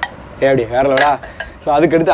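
A man speaking in two short phrases, with one light click at the very start from the bamboo flute being handled in his hands.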